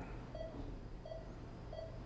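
Hospital patient monitor beeping steadily, one short electronic beep about every two-thirds of a second, over a low steady hum.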